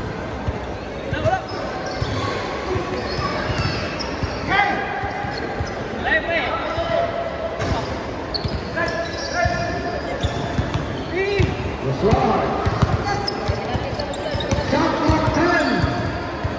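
A basketball being dribbled and bouncing on a hard tiled floor during a game, with players' and spectators' voices calling out over it in a large, echoing hall.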